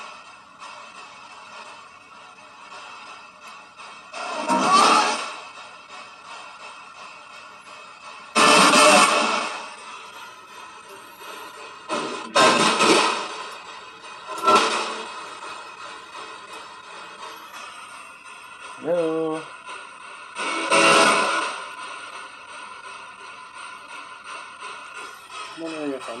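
Spirit box radio scanner sweeping the FM band: a steady static hiss, broken every few seconds by loud bursts of radio noise, with a brief snatch of broadcast voice or music about two-thirds of the way in.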